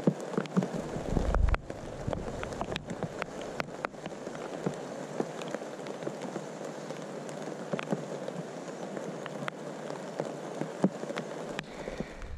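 Steady rustling and crackling of dry plant material, peppered with small clicks, with a low bump about a second in.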